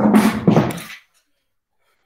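A person's voice: one short vocal sound lasting about a second, then silence.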